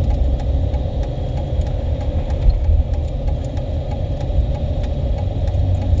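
An engine running steadily: a continuous low rumble with a faint steady hum above it.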